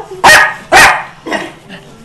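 Jack Russell terrier barking: two loud, sharp barks about half a second apart, then a fainter third bark.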